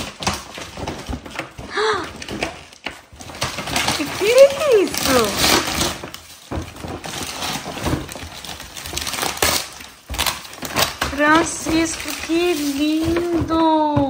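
Gift wrapping paper and a plastic bag rustling and crinkling as a present is handled. A voice is heard briefly about four seconds in, and again near the end.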